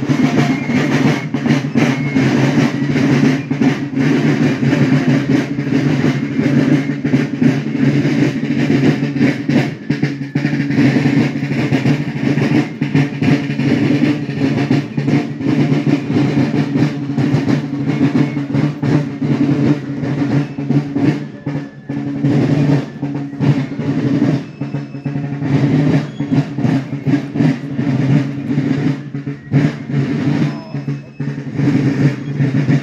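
Marching drums, snare drums with a bass drum, beating a continuous march cadence with rolls.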